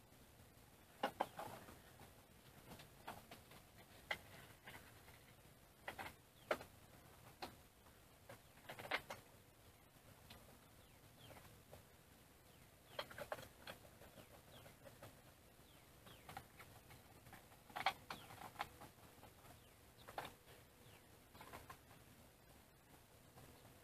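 Faint, scattered clicks and taps of small metal screws and aluminium frame parts being handled as the front plate of a CNC router's Y-axis frame is fitted and its screws are started by hand.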